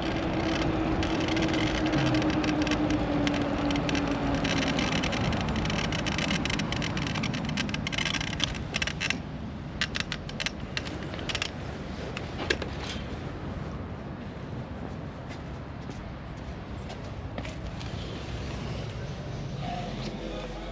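Wind rushing over a body-worn camera and tyre noise from an electric bike ridden along a road, with a steady whine that slowly drops in pitch over the first few seconds. After about nine seconds the rush fades as the bike slows, leaving scattered clicks and scrapes.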